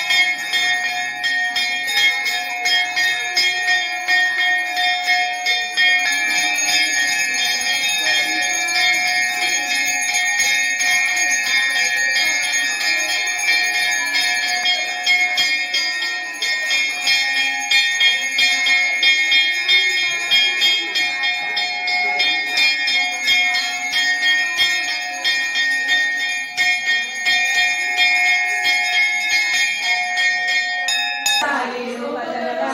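Temple bells ringing rapidly and continuously during the aarti, the lamp-waving offering, several bright ringing tones sustained without a break.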